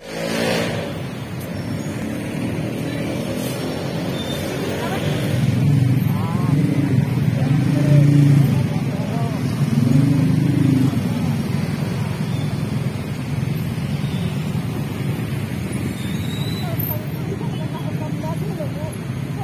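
Street traffic: motorcycle and car engines running and passing, with one engine rising and falling in pitch and loudest about eight seconds in, over a steady road noise and people talking in the background.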